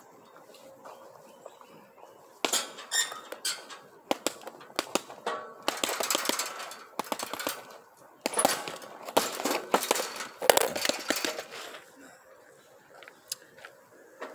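Bare-fisted punches landing on a hanging heavy bag in quick runs, with the bag's chain and metal frame clanking at each hit. They start a couple of seconds in and stop near the end.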